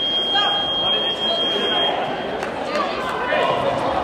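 A single steady, high-pitched electronic beep lasting about two seconds, heard over the voices of a crowded sports hall.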